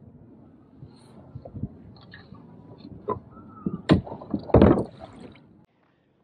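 Water sloshing against a plastic fishing kayak, with scattered knocks from gear and hands on the hull and one louder thump about four and a half seconds in. The sound cuts off suddenly just before the end.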